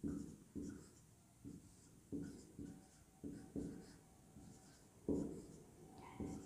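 Marker pen writing on a whiteboard: about ten short, faint strokes.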